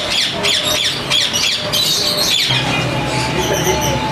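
Many caged pet birds chirping and squawking at once, a dense overlapping chatter of quick, sharp calls. A steady low hum joins in a little past halfway.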